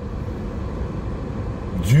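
Car interior noise while driving slowly: a steady low rumble of engine and tyres heard from inside the cabin. A man's voice starts near the end.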